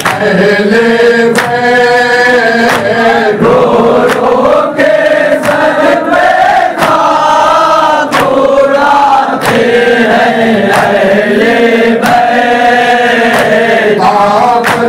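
A group of men chanting a noha, a Shia mourning lament, in unison, with chest-beating (matam) slaps keeping a steady beat about every two-thirds of a second.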